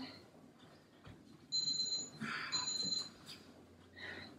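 Interval workout timer beeping twice, two short high steady beeps about a second apart, signalling the end of the rest period and the start of the next exercise.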